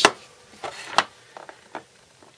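Triangular ceramic sharpening stones being slotted into the plastic base of a Spyderco Sharpmaker: a few light knocks and clicks, the sharpest about a second in.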